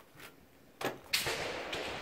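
Handling noise from an AR-15 rifle being worked by hand while a .22 LR conversion kit is fitted: a sharp click a little under a second in, then a louder sliding rustle that fades slowly.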